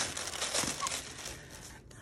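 Tissue paper being torn and crinkled by hand, busiest in the first second and then tailing off into lighter rustling.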